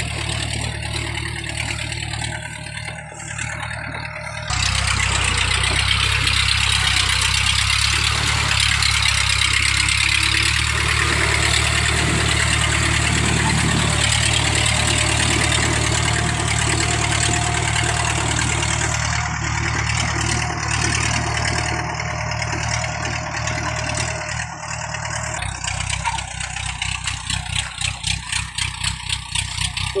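Engine of a homemade tracked rice-hauling crawler running steadily under a load of about 50 bags of rice as it works through a muddy harvested paddy. It grows sharply louder about four seconds in, and near the end its sound turns to an uneven pulsing chug.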